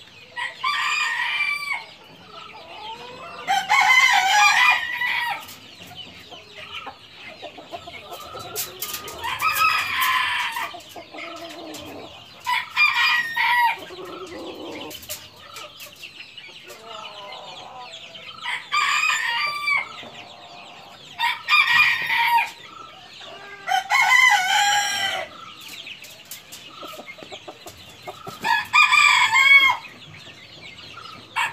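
Silkie chickens crowing and clucking, with about eight loud calls spread every few seconds over a fainter continuous high chatter.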